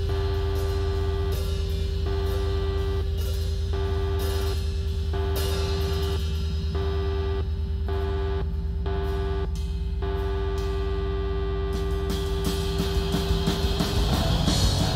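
Live punk rock band playing an instrumental passage: a distorted electric guitar repeats a held note in a steady chopped rhythm over a sustained bass and drums. Near the end the whole band gets louder and fuller.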